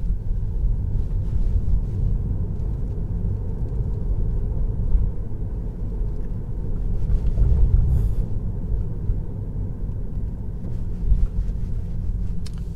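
Low, steady rumble of tyre and road noise heard inside the cabin of a Tesla Model 3 driving slowly.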